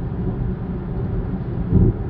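Steady low road and engine noise of a moving car, heard from inside the cabin, with a brief low thump near the end.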